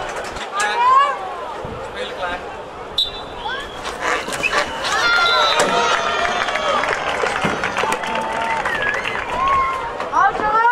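Many voices shouting and cheering after a penalty-stroke goal in a women's field hockey match. A short high whistle blast comes about three seconds in, and the shouting is densest from about halfway through.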